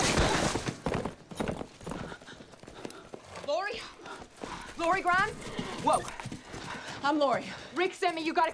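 A horse's hooves clopping, followed by short rising-and-falling calls from the horse or voices in the second half.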